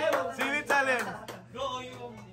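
Short, broken vocal sounds from people in a room, sung or called out rather than spoken as clear words, dying down after about a second and a half.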